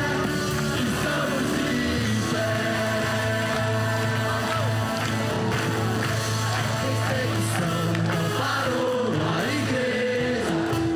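Large youth choir singing a Portuguese gospel song with instrumental accompaniment, sustained notes over a steady bass line.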